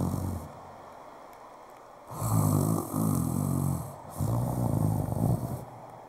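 A man imitating snoring into a hand-held microphone: the tail of one snore right at the start, then after a short lull three long snores in a row.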